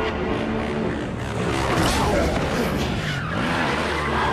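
Dirt bike engine revving in rising and falling swoops, with tyre squeal and skidding on pavement as the rear wheel spins and smokes.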